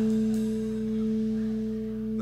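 A live rock band's final note held out after the singing stops: a steady low tone with its octave above, slowly fading.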